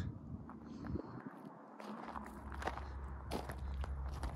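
Footsteps on loose rocky gravel: an irregular scatter of short steps, with a low steady rumble underneath from about halfway.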